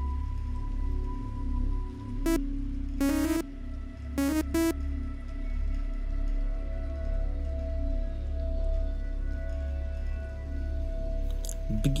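Software synthesizer sounds from Serum: a few short, bright notes about two to five seconds in, typical of a raw saw wave being auditioned, over a steady low drone and held tones.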